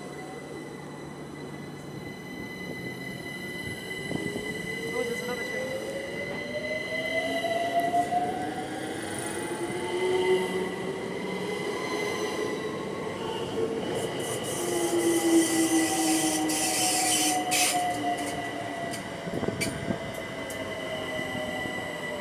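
A Class 378 Electrostar electric multiple unit pulling away and accelerating. Its traction motors whine, rising in pitch in several sweeps as it gathers speed, over a steady high tone. Wheel and rail noise grows louder and hissier as the carriages pass, peaking about two-thirds of the way in.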